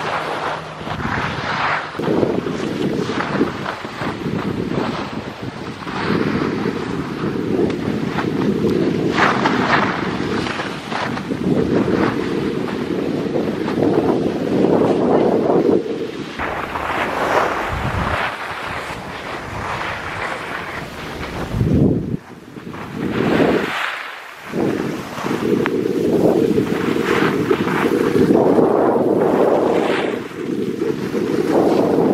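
Wind rushing over a handheld camera's microphone while skiing downhill, mixed with the hiss and scrape of skis sliding over packed, groomed snow. The rushing rises and falls with speed and drops to a short lull about three-quarters of the way through.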